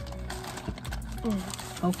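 Clear plastic packaging bag crinkling and crackling in the hands as it is opened, a run of quick sharp crackles in the first second.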